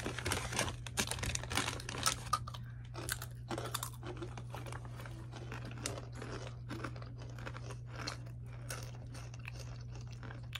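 Crunchy Takis rolled tortilla chips being chewed with the mouth close to the microphone: dense, crisp crunching for the first few seconds, thinning to softer, sparser crunches after that.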